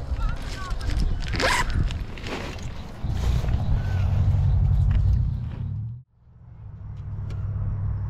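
Zipper of a fabric backpack being pulled, with the bag rustling as a hand rummages inside; the loudest zip comes about a second and a half in. A low rumble runs underneath, heaviest in the middle, and cuts off suddenly about six seconds in before slowly coming back.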